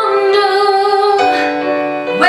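Woman singing a slow ballad into a handheld microphone over instrumental accompaniment, holding a long note and then moving to a new pitch just over a second in.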